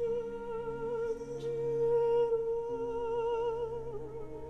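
An opera singer holding one long sung note with a steady, wavy vibrato over a quiet, sustained Baroque orchestral accompaniment; the note moves on near the end.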